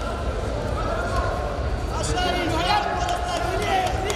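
Voices calling out and talking in a large sports hall, over a steady low hum.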